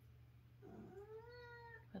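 A domestic tuxedo cat gives one quiet, drawn-out meow lasting a little over a second, its pitch rising slightly and then easing down.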